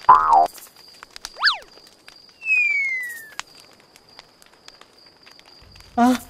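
Cartoon night-forest ambience: a steady high chirring runs throughout under faint scattered crackles. A short loud call comes at the start, a quick up-and-down whistle follows about a second and a half in, and a longer falling whistle comes at about two and a half seconds.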